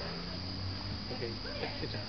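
Crickets chirping in one steady high trill, over a low steady hum from an idling fire engine. Faint voices murmur in the second half.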